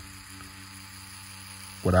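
Tattoo machine running at around seven volts: a steady low hum, with a word of speech cutting in at the end.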